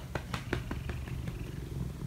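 Cat purring steadily, a low rumble, with a scatter of irregular sharp clicks and rustles over it.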